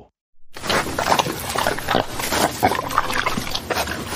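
Cartoon eating sound effect: several people chewing and chomping noisily together, starting about half a second in.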